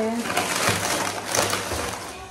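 Thin plastic carrier bag rustling and crinkling as it is handled, with a few sharper crackles.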